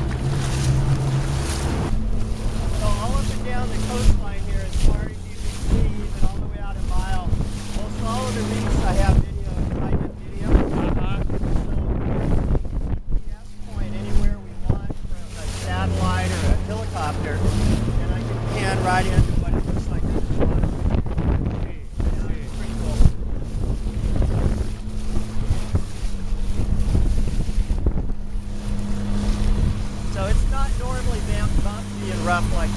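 Inflatable boat's outboard motor running under way, its engine note stepping up and down several times. Wind buffets the microphone, water rushes past, and there are occasional thumps as the hull meets the chop.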